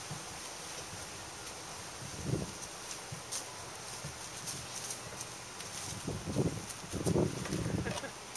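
A toddler's short vocal sounds, soft grunts and babble, come a few times, loudest from about six to seven and a half seconds in. Under them, faint scuffing and rustling of small footsteps in bark mulch.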